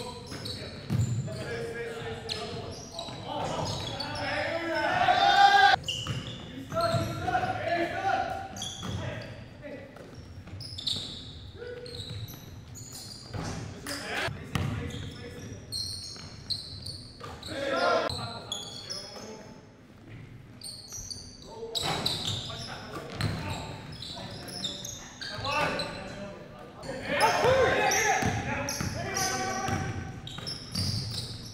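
Live basketball game in an echoing gym: the ball bouncing on the hardwood floor, sneakers squeaking and players calling out to each other, loudest about five seconds in and near the end.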